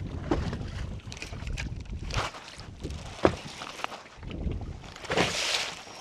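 Wind on the microphone and waves lapping against a small fishing boat, with a few scattered knocks and a brief rush of noise about five seconds in.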